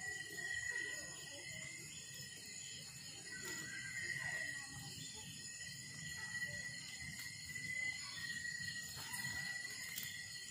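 Night insects trilling steadily at a high pitch, the trill swelling and fading in long stretches, over a wood fire burning in an open fire pit with a few faint crackles.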